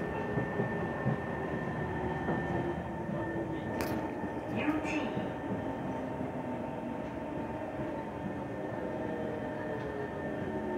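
Interior of a KHI C151 metro train running along the viaduct: a steady rumble of wheels and car body with a held whine. A few sharp clicks come about four to five seconds in, and from about eight seconds in a lower motor tone slides down in pitch.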